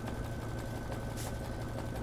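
Embroidery machine running steadily, stitching the inner satin-stitch column that anchors a loop fringe.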